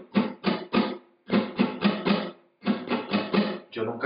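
Flamenco guitar rasgueo played slowly: the little, ring, middle and index fingers flick down across the strings one after another, each finger a separate strum. The pattern is played three times, three or four strokes in each run, with short pauses between.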